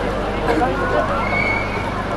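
Crowd chatter, with one short, high, steady-pitched squeal a little over a second in.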